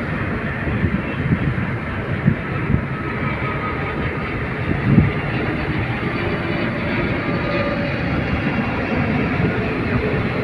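Steady road and engine noise heard inside a moving car's cabin, with a few brief low thumps, the loudest about five seconds in.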